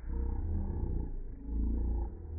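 Sound from a slow-motion recording played back slowed down, so everything is pitched far down into deep, drawn-out growling drones with a fast flutter. It swells and dips twice.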